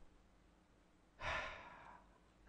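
Near-silent room tone, then a little over a second in a man's single breath into the microphone, a sigh under a second long that fades out.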